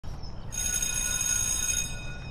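An electric school bell ringing: a steady high-pitched ring that starts about half a second in and stops near the end, with a faint ring dying away after it.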